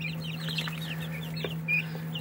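A group of young chicks peeping: many short, high, falling cheeps overlapping several times a second, over a steady low hum.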